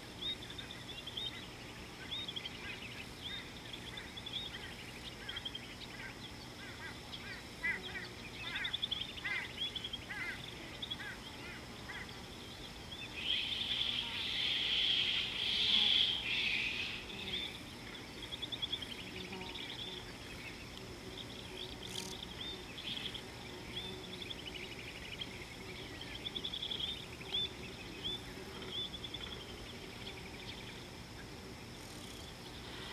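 Bush ambience: many small birds chirping and calling in short, repeated notes over a steady high insect drone, with a louder, denser bout of rapid chirring in the middle.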